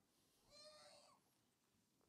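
Near silence: room tone, with a faint, brief high-pitched voice about half a second in.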